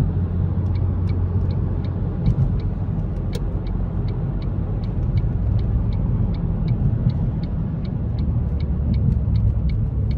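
Turn-signal indicator of a Ford Mondeo ST220 ticking evenly, a few times a second, over the steady low rumble of its 3.0 V6 engine and road noise, heard inside the cabin while cruising.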